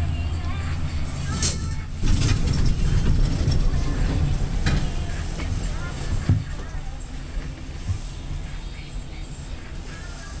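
Westinghouse/Spencer Selectomatic traction elevator car in motion: a steady low rumble that grows louder about two seconds in, with a few sharp mechanical clicks.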